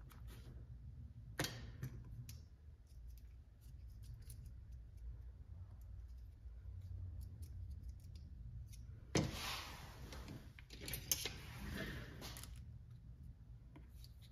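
Small clicks and taps of hands working a small metal pick into a plastic RC steering knuckle to push out its wheel bearings, with a louder scratchy scraping and rustling that lasts about three seconds near the end.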